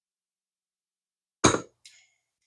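A sharp knock about one and a half seconds in, then a lighter metallic clink with a brief ring, as a small tool or metal reel part is set down on the workbench during reel disassembly.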